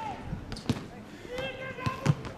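Football being kicked on the pitch, with a sharp thud a little under a second in and another near the end. A player's short shout comes between them.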